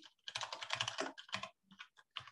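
Typing on a computer keyboard: a quick run of keystrokes for about a second and a half, then a short pause and a last keystroke or two.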